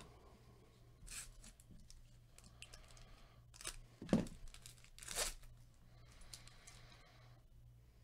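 Foil trading-card pack being torn open by hand and its wrapper crinkled: several sharp rips, the loudest about four seconds in, then a stretch of softer crinkling.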